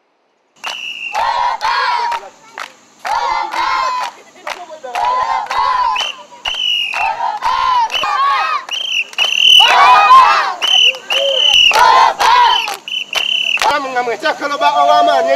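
A group of children shouting a rhythmic chant together, about one chant a second, each opening on a high held call.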